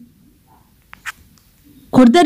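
A quiet pause in the voice-over, with a faint short chirp-like tick and a click about a second in.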